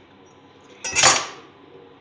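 One short clatter about a second in: chopped tomato swept off a wooden cutting board with a chef's knife and dropped into a stainless steel mixing bowl.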